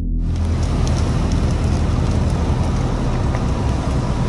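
Steady rushing noise of a large fire burning through buildings and vehicles, with scattered small crackles and a low steady hum underneath.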